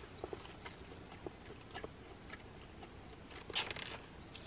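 A person chewing a big mouthful of a lamb and romaine salad bowl with the mouth closed: quiet, with faint scattered small clicks of the chewing. A short, louder noisy sound comes near the end.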